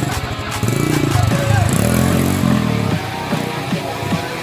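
Dirt bike engine revving up and falling back once in the middle, under rock music and crowd voices.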